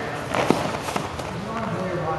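Indistinct voices of people talking in the background, with a single sharp tap about half a second in.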